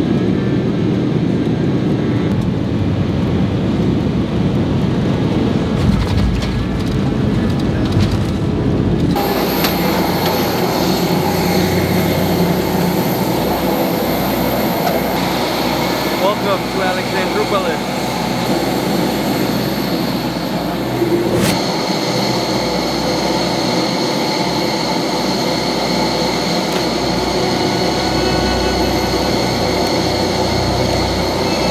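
Jet airliner noise: the steady rumble of the cabin, then from about nine seconds in the steady high whine of a parked jet airliner on the apron.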